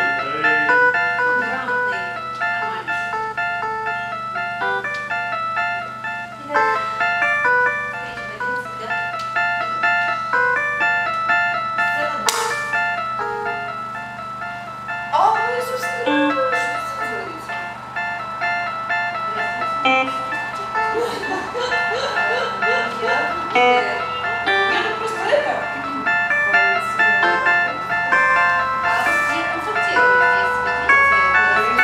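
Yamaha portable electronic keyboard playing a slow melody of separate held notes, with voices in the background.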